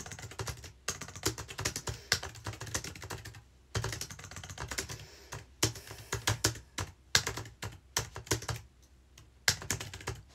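Fast, loud typing on a computer keyboard: rapid key clicks in runs broken by short pauses.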